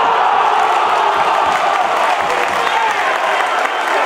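Football crowd cheering and shouting over a goal, many voices blending into one steady din.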